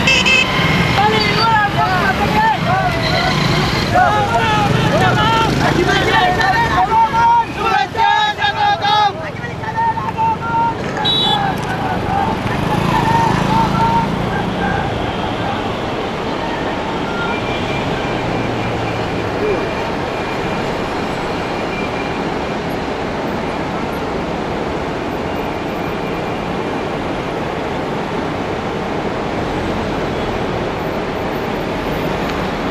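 Several people talking over a steady noisy din; the voices die away after about fourteen seconds, leaving the din.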